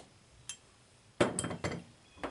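Small metal carburetor parts clinking on a table as they are handled and set down: one sharp click about half a second in, then a quick cluster of clinks about a second later.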